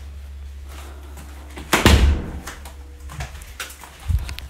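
A single loud thump about halfway through, over a low steady hum.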